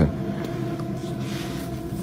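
Steady low background hum with faint hiss, the room tone of a handheld recording, without distinct events.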